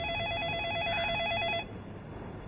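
Telephone ringing with an electronic trill that warbles rapidly between two close pitches. The ring cuts off near the end, one burst of a repeating ring-and-pause cycle.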